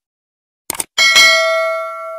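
Subscribe-button animation sound effects: a quick double mouse click, then about a second in a bright notification bell chime rings out and fades slowly.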